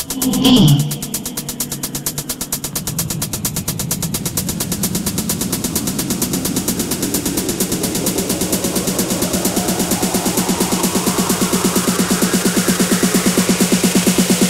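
Electronic dance music in a DJ mix: a fast pulsing beat, a sudden downward-sweeping effect about half a second in, then a build-up with a held low note and a rising sweep that grows steadily louder.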